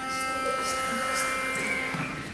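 A pitch pipe sounding one steady, held note for about two seconds, giving the singers their starting pitch before an a cappella song.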